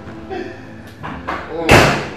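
A door slams once near the end, sharp and loud, over background music with a voice.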